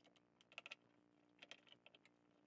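Faint clicks and clacks of metal hand tools being slotted into the pockets of a canvas tool roll, in two short clusters.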